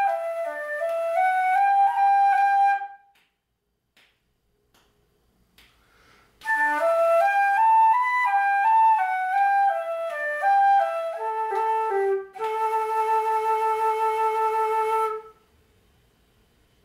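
Transverse Irish flute playing a reel melody one note at a time: a phrase that stops about three seconds in, a pause of about three seconds, then another phrase that ends on a long held low note, which breaks off about a second before the end.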